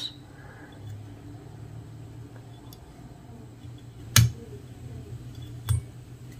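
Quiet handling sounds of a whip finishing tool wrapping fly-tying thread, over a low steady hum, with one sharp click about four seconds in and a smaller click near the end as the tool is released.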